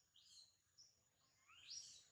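Faint high-pitched bird chirps: a few short calls early on, then a longer chirp sweeping upward near the end.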